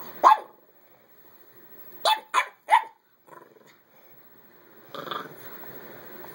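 Dogs play-barking: one sharp bark just after the start, then three quick barks in a row about two seconds in, and a quieter, rougher noise near the end.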